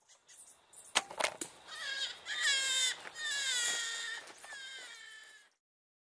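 Hare screaming: a run of high-pitched, bleat-like cries, each sliding down in pitch, after a few sharp clicks about a second in. The cries cut off abruptly shortly before the end.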